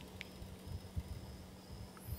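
Faint background in a pause: a steady low hum with a thin, high, on-and-off tone, and one short chirp about a fifth of a second in.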